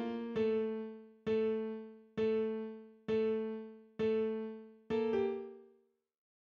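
FL Keys piano plugin playing a simple sequenced melody: an octave pair of A notes struck about once every second, each note decaying before the next. Near the end it steps to a lower note and then stops.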